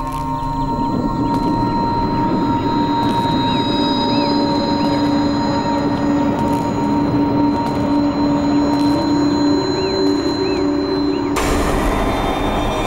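Dramatic background score of held drone tones over a dense low rumble, with a sudden louder swell about a second before the end.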